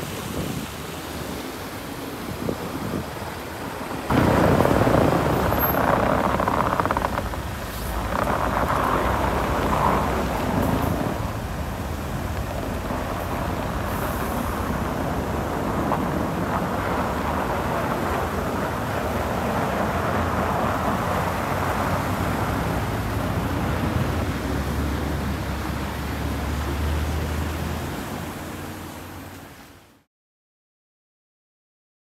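Vehicle and street noise on a snowy road, with a sudden louder rush about four seconds in. Then a Land Rover Defender's engine idling in the cold with a steady low rumble, fading out at the end.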